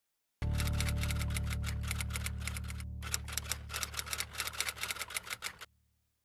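Typewriter keystroke sound effect, rapid clicks several a second with a brief break about halfway, over a steady low synth drone; the clicks stop shortly before the end and the drone fades out.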